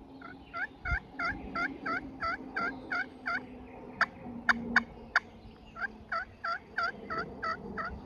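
Turkey friction pot call worked with a wooden striker, running a series of yelps at about four notes a second, then a few sharp clucks, then a second run of yelps. This is soft calling meant to pull in a quiet gobbler.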